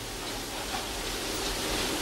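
Steady, even hiss-like background noise, with no voices or distinct events.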